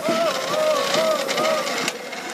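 A single voice chanting a slow, wavering tune in long held notes that rise and fall a little, fading out shortly before a sharp click near the end.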